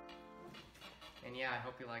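A grand piano's final held chord fading away, followed by a young man speaking briefly.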